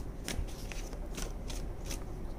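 A deck of oracle cards being shuffled by hand: several short, crisp papery flicks of cards against each other.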